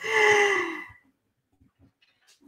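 A woman's voiced sigh, about a second long, falling slightly in pitch.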